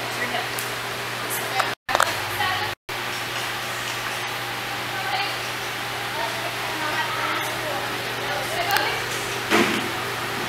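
Indistinct voices talking over a steady low hum, with the sound cutting out briefly twice about two and three seconds in.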